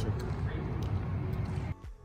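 Outdoor background noise: a steady low rumble with faint voices in it, cutting off suddenly near the end.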